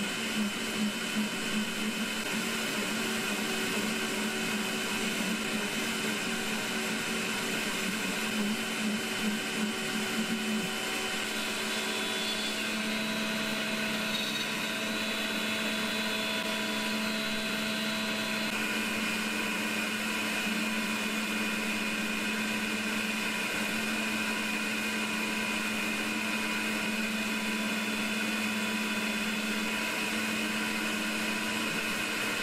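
Makera Z1 desktop CNC mill's spindle at 13,000 rpm driving a 1/8-inch three-flute end mill through aluminium, cutting a pocket. A steady whine of several tones, with a low pulsing about twice a second for the first ten seconds that then settles into an even cut.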